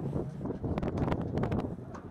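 Wind buffeting the camera microphone, a steady low rumble with a few short clicks around the middle.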